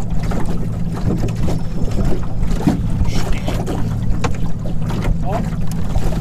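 Small tiller-steered outboard motor running steadily at trolling speed, a low even drone, with wind on the microphone.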